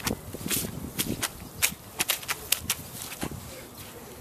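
Footsteps on a patch of lawn soaked by a leaking buried water pipe: an irregular string of sharp ticks and soft thuds as a boot steps about on the wet grass.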